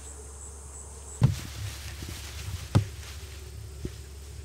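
Insects buzzing and chirping in the background, a faint steady pulsing with a low hum. Two short dull thumps about a second and a half apart stand out above it.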